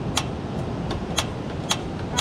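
Portable butane cassette stove's push-button piezo igniter clicking three times, about a second and then half a second apart, as the burner is being lit and has not yet caught, over a steady low background rumble.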